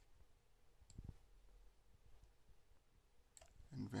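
Near silence with a faint computer mouse click and soft thump about a second in, and a few fainter ticks.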